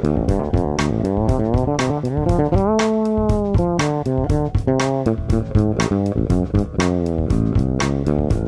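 Fretless electric bass played with the fingers: a quick run of plucked notes that slide in pitch between one another, with a held note about three seconds in that glides up, sustains, and bends back down.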